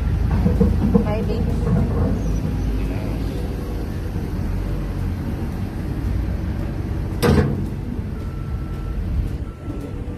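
A vehicle engine running with a steady low rumble, with a single sharp knock about seven seconds in.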